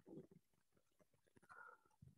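Near silence: room tone, with two very faint brief sounds, one just after the start and one near the end.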